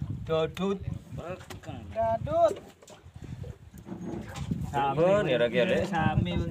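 Men's voices talking and calling out, with one rising-and-falling call about two seconds in and busier talk near the end.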